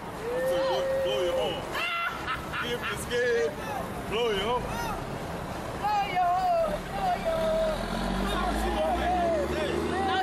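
Voices of a small outdoor group talking and calling out, not clear enough to make out words, some of them drawn-out calls. A low rumble builds in the last few seconds.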